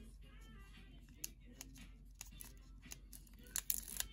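Faint clicks and crinkles of scissors being worked on the foil wrapper of a trading-card booster pack, with a few louder snips near the end.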